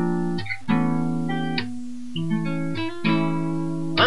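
Acoustic guitar strummed, with about five chords struck in the four seconds and each left to ring.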